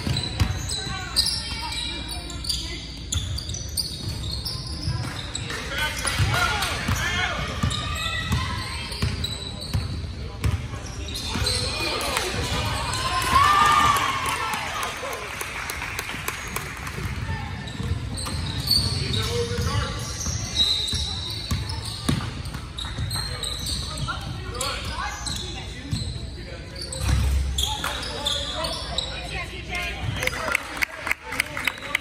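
A basketball bouncing on a hardwood gym floor during play, with many people's voices calling out in a large hall.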